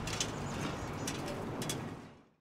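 Outdoor ambience: birds chirping in a few short calls over a steady low background rumble.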